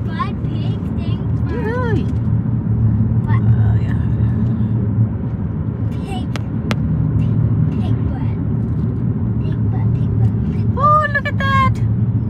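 Road and engine noise inside a moving car's cabin: a steady low rumble that runs throughout. A few short bits of voice come over it, near the start, around two seconds in, and again near the end.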